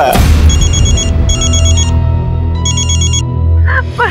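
Mobile phone ringtone sounding for an incoming video call: a rapid electronic warbling trill in three bursts. It plays over dramatic background music with a deep bass drone.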